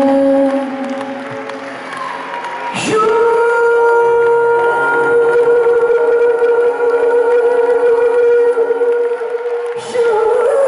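Male pop singer performing live through a microphone over backing music in a large hall. A held note ends just after the start; about three seconds in he slides up into one long note held for about seven seconds.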